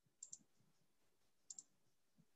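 Faint computer mouse clicks: two quick pairs of clicks, the first about a quarter second in and the second about a second and a half in, against near silence.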